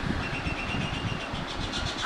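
Birds chirping outside, one thin high note held for about a second, over a steady low rumble.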